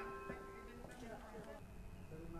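The last tones of a railway station PA announcement chime ring on and fade out within the first second, followed by faint speech.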